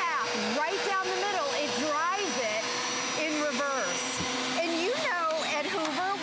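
Hoover Power Scrub Elite carpet and hard-floor cleaner running with a steady whine under talking, the whine stopping about four seconds in.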